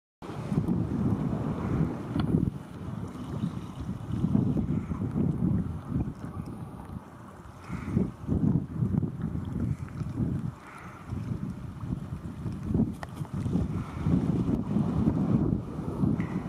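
Wind buffeting the microphone in uneven gusts, a low rumble that swells and fades every second or two.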